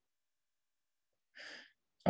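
Near silence, broken once about one and a half seconds in by a man's short breath intake.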